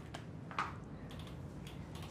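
A few light taps over low steady room noise, the clearest about half a second in.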